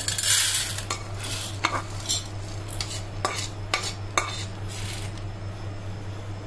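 Dry-roasted split lentils poured from a metal pan into a steel plate: a brief rush of rattling about half a second in, then a string of separate sharp metal taps and scrapes against the pan, over a steady low hum.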